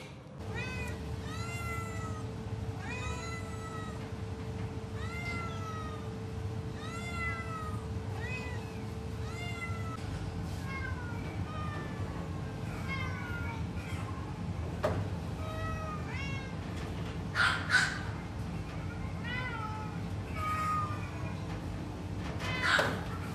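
A caged cat meowing over and over, about one short rising-and-falling meow a second, over a steady low hum.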